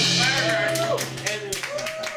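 A small group clapping by hand, with voices calling out, as the last chord of an electric guitar fades away. The clapping thins out near the end.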